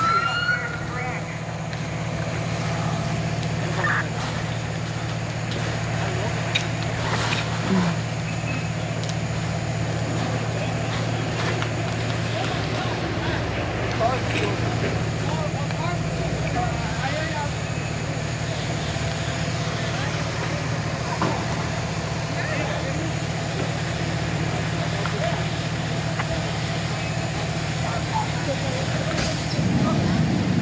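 A fire engine's engine runs at a steady speed, pumping water to the attack hose lines, heard as a constant low drone. Voices and a few short knocks come over it.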